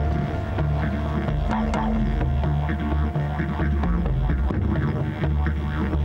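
Soundtrack music led by a didgeridoo: a low, pulsing drone that shifts in pitch in a repeating pattern, with regular clicking percussion over it.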